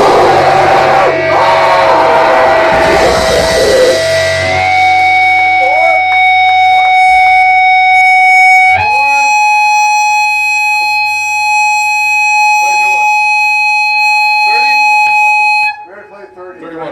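A grindcore band plays at full volume with drums and distorted electric guitar, then stops about four seconds in. The guitar is left ringing as one steady feedback tone that jumps higher twice, with voices talking faintly underneath. The tone cuts off just before the end.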